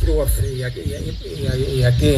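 A man's voice speaking, with small birds chirping faintly in the background.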